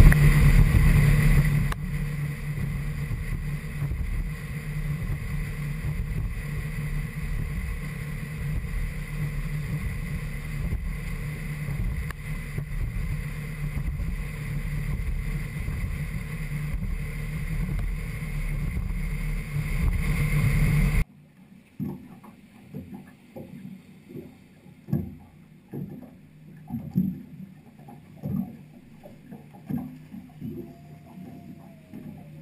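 Boat running at speed under its Suzuki 250 outboard: a steady engine drone mixed with wind and hull noise. About two-thirds of the way through it cuts off suddenly, leaving a quieter stretch of small knocks and water sounds against the hull.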